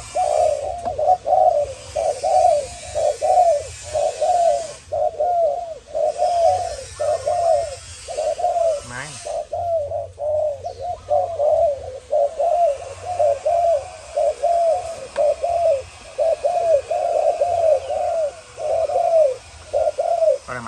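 Spotted doves of the Malaysian strain cooing, a steady run of short, repeated coos without a break.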